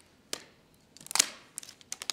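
Fingers picking at the corner of the thin protective plastic film on an iMac Pro's screen: a few sharp clicks and crackles of the plastic, the loudest a little after a second in.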